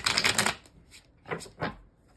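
A deck of tarot cards being shuffled by hand in one short, loud burst of about half a second, followed near the end by two brief, softer sounds.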